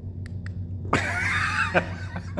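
Two faint clicks, then about a second in a man's short, sudden breathy vocal outburst: his reaction to a jolt from a dog training shock collar held against his arm.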